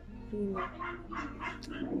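A woman speaking over background music.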